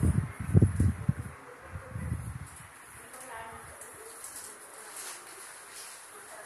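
Low rumbling bursts of noise on the recording microphone, with about a second and a half of them at the start and a shorter cluster about two seconds in, then only a faint room background.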